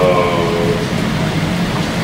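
A man's drawn-out hesitation sound, a held 'uh' through a microphone that trails off within the first second, over a steady low rumble of room noise.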